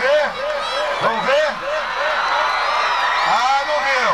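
A man's voice talking animatedly, as a rodeo announcer does over a public-address system, with crowd noise behind it that thickens about halfway through.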